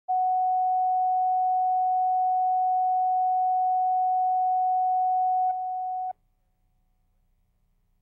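Line-up reference tone accompanying color bars at the head of a broadcast tape: one steady pure tone for setting audio levels. It drops a step in level about five and a half seconds in and cuts off suddenly about half a second later.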